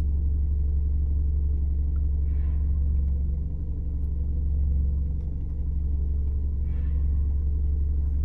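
Vehicle engine idling with a steady low rumble, with two faint distant calls, about two and a half seconds in and again near seven seconds: sambar deer alarm calls, which indicate a tiger nearby.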